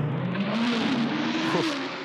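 V8 Supercar race cars passing at speed, their V8 engines climbing steadily in pitch over the first second and a half as they accelerate.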